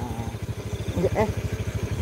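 Motorcycle engine running steadily, a rapid even beat of low pulses under the ride.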